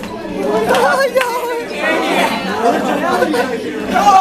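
A group of people chattering and calling out over one another, with no music under them.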